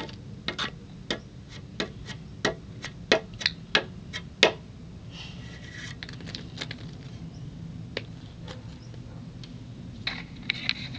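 Toy horse figurine's hooves tapped on the floor: about a dozen sharp, irregular clicks over the first four and a half seconds, then a single tap near eight seconds.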